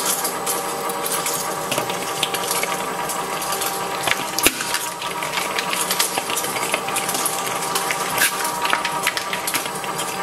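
Industrial shredder running with a steady motor and gear hum, its steel cutter shafts turning empty, while plastic balls knock and rattle against the blades in frequent sharp clicks, one loud knock about halfway through.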